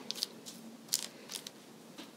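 Pastry brush working heavy cream onto raw pie dough: a few faint, brief bristle swishes and ticks, near the start and again about a second in.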